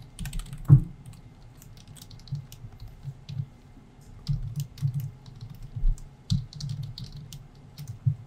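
Typing on a computer keyboard: irregular runs of quick keystrokes, thinning out around the third second and picking up again after about four seconds.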